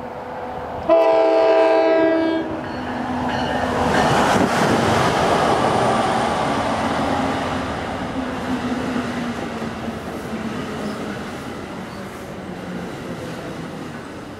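An NJ Transit train sounds one horn blast of about a second and a half, starting about a second in. The train then runs past the platform with a rising rush and rumble of its cars that is loudest a few seconds later and slowly dies away.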